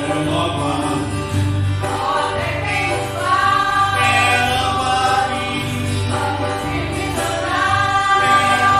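A small mixed congregation of men, women and children singing a hymn together from song sheets, with the women's voices leading, over a low accompaniment that shifts from note to note.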